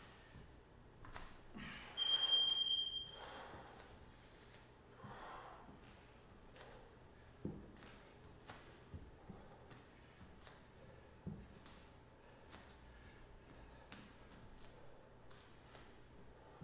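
A workout interval timer gives one steady electronic beep of about a second, about two seconds in, marking the start of a work interval. After it come breaths and soft thuds of bare feet stepping into dumbbell lunges on a wooden floor.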